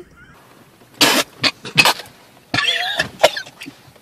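People laughing hard in sharp, explosive bursts: a first burst about a second in, two more shortly after, then a longer cackling run near three seconds.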